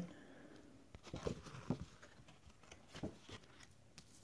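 A paper lottery scratch card being handled and laid down on a granite countertop: faint rustles and light taps, a cluster about a second in and another about three seconds in.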